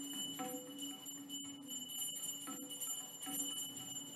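A temple hand bell rung continuously, a steady high ringing with faint strikes of the clapper, over a lower tone that comes and goes.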